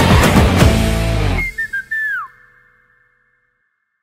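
A film song ending: the full band with its heavy beat stops about one and a half seconds in, leaving a few short high whistle-like notes, the last one sliding down in pitch before the sound fades out.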